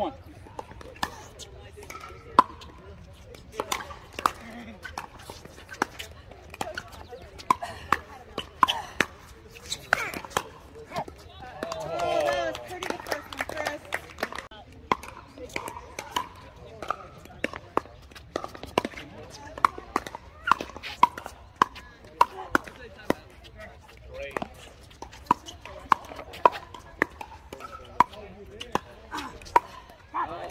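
Pickleball rallies: paddles striking the hollow plastic ball in a series of sharp pops, coming faster in the second half. A voice is heard briefly in the middle.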